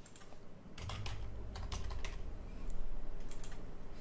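Typing on a computer keyboard: a run of irregularly spaced keystrokes as a short word is typed.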